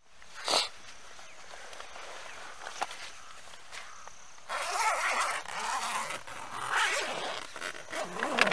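A tent's door zipper being pulled open in rasping strokes, with the longest pulls about halfway through and again a second or two later. A short sharp rasp comes about half a second in, over a faint steady hiss.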